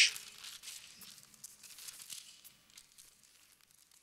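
Thin Bible pages rustling as they are leafed through by hand, faint, dying away about three seconds in.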